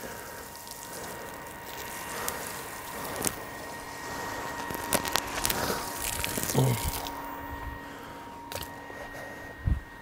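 Quiet outdoor background: a faint steady hiss with a thin, steady high whine, broken by a few soft clicks and taps of handling noise as the camera is carried across the yard.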